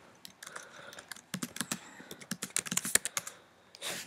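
Computer keyboard being typed on: a run of quick, irregular key clicks that stops shortly before the end.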